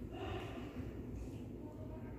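A young child's short, faint breath near the start, over a low steady room hum.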